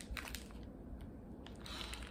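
Faint handling and sniffing of a wax melt breakaway bar in its plastic clamshell: a few light clicks just after the start, then a short breathy sniff near the end.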